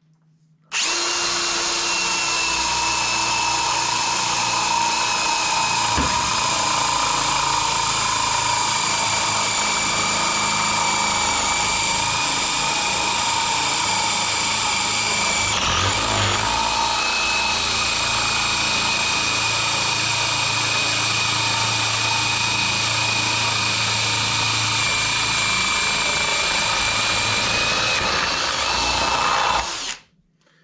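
Parkside Performance PSBSAP 20-Li A1 brushless cordless drill-driver running steadily at high speed in second gear, boring an 18 mm spade bit through a block of wood. The high motor whine starts about a second in, dips briefly about halfway, and stops just before the end.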